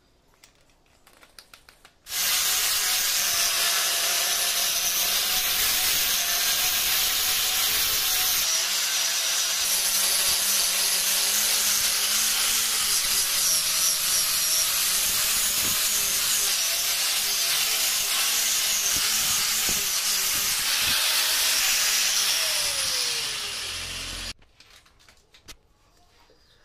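Angle grinder fitted with a fibrous polishing wheel, buffing a stainless steel railing. It starts abruptly about two seconds in, runs steadily for some twenty seconds, then fades off over a second or two and cuts out suddenly.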